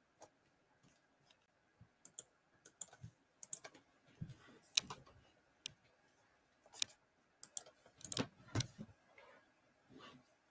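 Computer keyboard typing, in faint irregular clicks and short runs of keystrokes starting about two seconds in.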